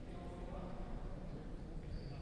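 Faint ambience of an indoor sports hall: distant voices of players and spectators echoing, over a low steady rumble.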